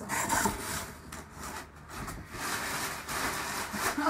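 Cardboard shipping box being opened and rummaged by hand: irregular scraping and rustling of cardboard flaps and packing material.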